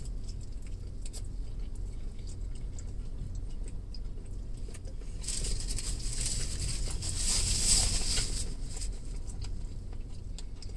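A man chewing a bite of soft corn-tortilla taco, faint mouth clicks over the low steady hum of a car interior. From about five seconds in, a louder crinkly rustle lasts about three seconds.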